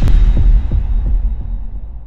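Logo-sting sound effect: a sharp hit at the start, then a deep, low rumbling boom that slowly fades.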